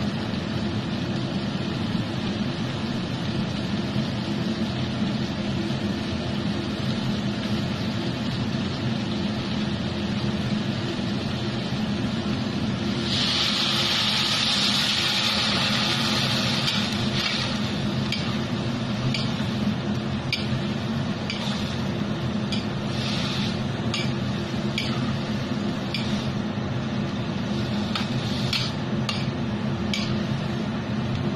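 Food being stir-fried in a steel wok over a steady low hum. About 13 seconds in, a loud sizzle swells for around three seconds. After that, the metal spatula scrapes and taps against the wok again and again.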